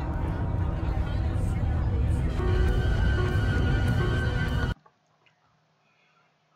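Loud, dense horror-film soundtrack music, with a held high tone coming in about halfway. It cuts off suddenly about three-quarters of the way through as the player is muted, leaving only faint room tone.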